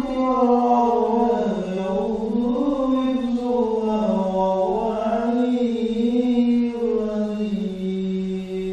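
One voice chanting a slow, drawn-out melodic line, with long held notes that slide gently down and back up in pitch.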